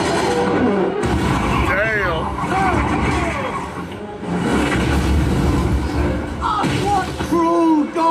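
Cartoon soundtrack of music and sound effects, with a low rumbling boom about four seconds in and a man's voice over it.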